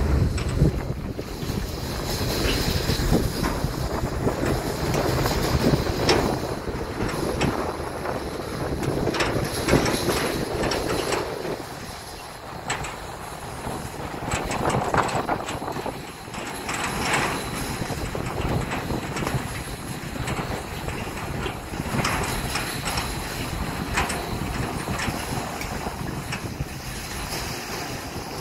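Car tyres rumbling and crunching over a dry dirt track, with the heavily loaded car trailer behind rattling and knocking over the bumps. The noise rises and falls, dipping around the middle and picking up again.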